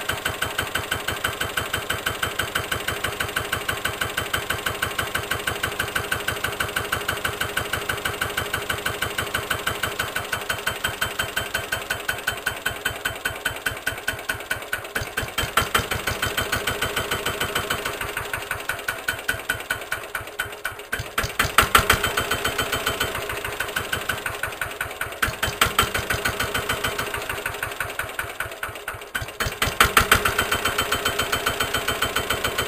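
Lister LT1 single-cylinder air-cooled diesel stationary engine running at a slow idle, with a steady chain of exhaust beats. In the second half the beats slow and pick up again a few times as the speed control is worked, with a couple of louder beats.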